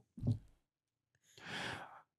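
A short spoken "oh", then a pause, then an audible breath into a close podcast microphone, lasting about half a second near the end.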